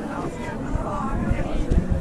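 Indistinct chatter of several visitors talking in a hall, with irregular low rumbling bumps that grow louder in the second half.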